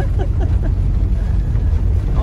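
Motorhome heard from inside its cab, driving slowly over cobblestones: a loud, steady low rumble from the engine and the tyres on the stones.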